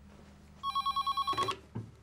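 Desk landline telephone ringing with a rapid electronic warble. The ring stops about one and a half seconds in, followed by a couple of low clunks as the corded handset is picked up.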